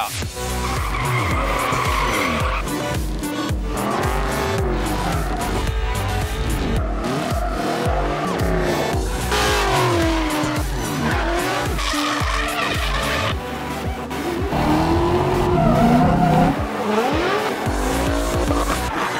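Ford Mustang drift cars sliding: engines revving up and down and tyres squealing and skidding, with a music track underneath.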